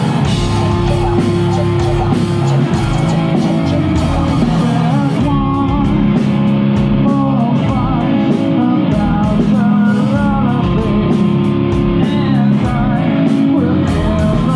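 Live nu-metal band playing loud: distorted electric guitar, bass and drums, with a DJ on turntables on stage. About five seconds in the arrangement thins, leaving evenly spaced cymbal ticks over the guitar.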